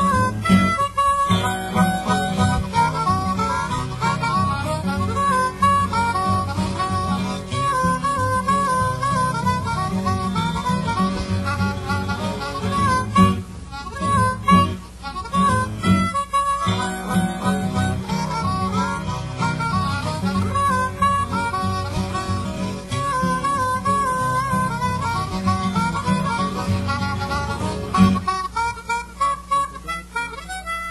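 Piedmont-style acoustic blues: a diatonic blues harmonica playing a wailing, bending lead over a fingerpicked acoustic guitar with a thumbed bass line. Near the end the guitar's bass drops away while the harmonica carries on.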